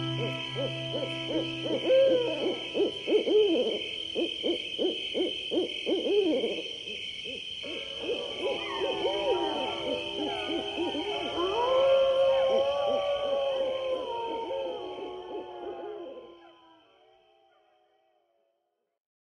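Ambient passage of an atmospheric black metal recording. Many short wavering calls rise and fall in pitch over steady held high tones, with a low drone that drops out a few seconds in. The whole passage fades out to silence near the end.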